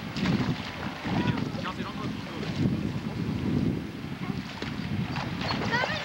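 Wind rumbling on the camcorder microphone in uneven gusts, with indistinct voices and a few high chirping sounds near the end.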